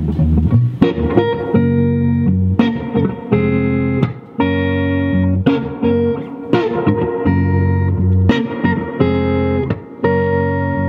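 Epiphone Les Paul electric guitar played through an amplifier: chords struck and left ringing, with short runs of single notes between them and a couple of brief pauses.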